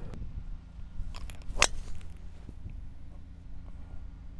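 Tee shot: a golf club striking the ball, one sharp crack about a second and a half in, over a low steady rumble.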